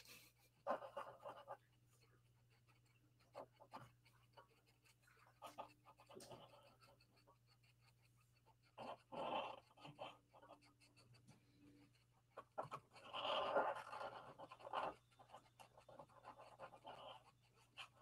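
Faint, intermittent scratching of a toner pen drawn over card through a stencil, in short separate strokes.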